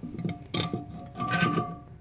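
Channel-lock (tongue-and-groove) pliers gripping and turning a plastic toilet fill-valve lock nut under the tank, giving two short clicks less than a second apart.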